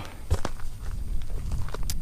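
Footsteps on dry, stony desert ground and the handling of a handheld camera as it is turned around, over a steady low rumble, with a couple of short sharp clicks.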